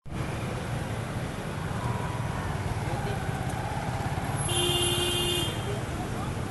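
Dense street traffic of motorcycles and cars, engines running in a crowded jam. A vehicle horn sounds for about a second near the end.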